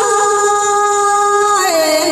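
Hát Thái, a Thái folk song, sung with music: one long held note that slides down in pitch about one and a half seconds in.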